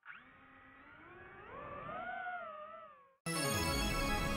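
DJI FPV drone's motors whining, rising in pitch with small wavers as the throttle comes up, then fading out about three seconds in. Loud music with a beat cuts in right after.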